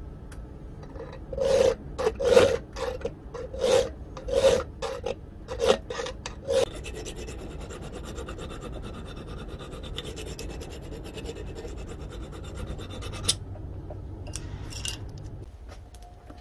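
Hand file rasping across a steel knife blank held in a vise, shaping the blade: about eight loud separate strokes in the first seven seconds, then a quieter, continuous scraping that stops suddenly about 13 seconds in.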